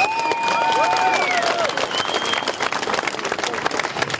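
Large crowd applauding, with several voices giving long drawn-out cheers in the first second and a half.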